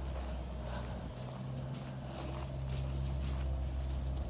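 A steady low mechanical hum runs throughout, with faint irregular footsteps on the ground.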